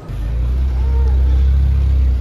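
Motor vehicle engine running with a loud, steady low rumble that cuts in abruptly at the start.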